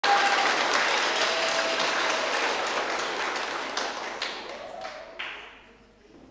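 Concert audience applauding, the clapping thinning out to a few scattered claps and dying away near the end.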